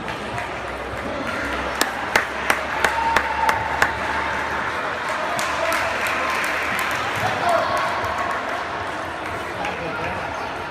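Table tennis rally: the ball clicks sharply off bats and table about seven times, roughly three a second, then the rally ends. A hall full of voices murmurs underneath.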